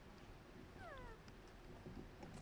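A young macaque gives one short, faint call that falls in pitch, about a second in.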